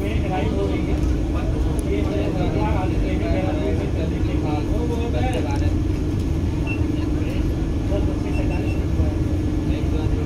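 Steady low rumble and hum inside a Vande Bharat Express chair-car coach, with indistinct voices of people talking, mostly in the first half.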